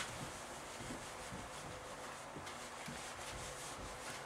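Felt eraser rubbing across a whiteboard in quick repeated strokes, wiping the board clean; faint, with a sharper swipe right at the start.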